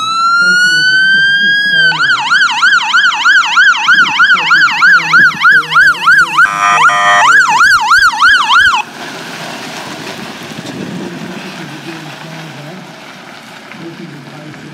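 Fire engine's electronic siren winding up into a rising wail, then switching to a fast yelp of about two to three sweeps a second, broken by a short horn blast about six and a half seconds in. The siren cuts off suddenly about nine seconds in, leaving quieter outdoor background noise.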